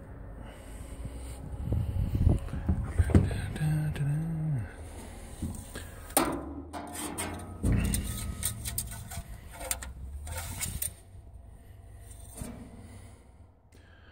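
Scattered knocks, thumps and scrapes of boots and hands on a combine's sheet-metal deck and engine parts, with a short hummed voice sound about four seconds in.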